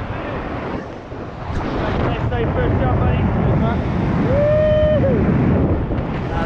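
Wind buffeting the camera's microphone during tandem parachute flight under an open canopy, a rough rumbling rush that grows louder from about two seconds in.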